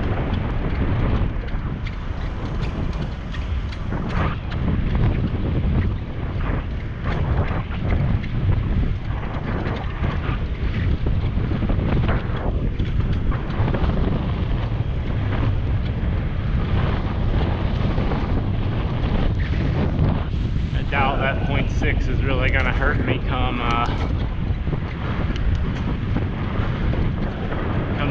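Wind buffeting the microphone of a camera riding on a moving bicycle: a steady low rumble.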